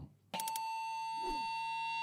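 A single steady electronic tone that starts about a third of a second in and holds unchanged: the lead-in note of a segment's intro sting.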